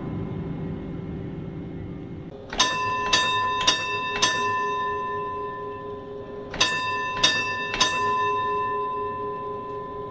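A bell struck four times in quick succession, about half a second apart, then three more times after a pause of about two seconds, its tone ringing on between strokes. The fading tail of a song is heard at the start.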